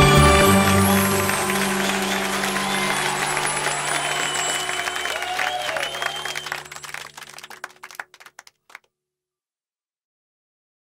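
Closing music ending on a held chord, under a crowd applauding and cheering with a few rising and falling shouts. All of it dies away about eight or nine seconds in.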